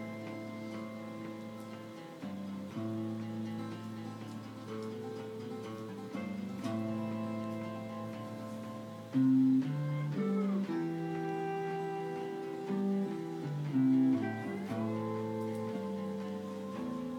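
Live acoustic guitar with a second guitar playing the instrumental intro of an indie song: held chords and single notes, with notes sliding up in pitch twice in the second half and a louder accent about nine seconds in.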